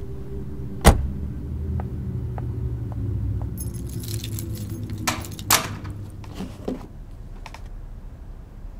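A car door shuts with a single heavy thud about a second in, over the low steady rumble of an idling car engine. From the middle a bunch of keys jangles, with a few sharp clicks.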